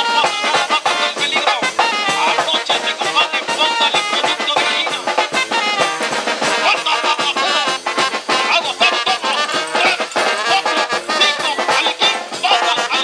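Brass band music with a steady beat, playing throughout.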